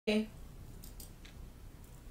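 A very short clipped voice sound right at the start, then faint room noise with a few soft clicks about a second in.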